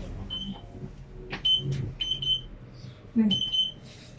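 Elevator control panel beeping as floor buttons are pressed: about five short, high electronic beeps, the last one a little longer.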